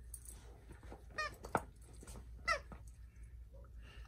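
Squeaker in a plush dog toy squeaking twice as a husky chews it: two short, slightly rising squeaks about a second apart, with a soft click between them.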